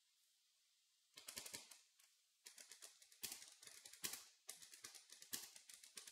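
Typing on a computer keyboard: quick runs of key clicks in bursts, starting about a second in.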